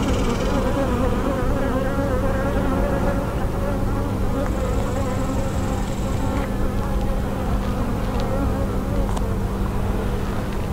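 A mass of honeybees buzzing around an opened hive and the brood frame being held up: a dense, steady hum.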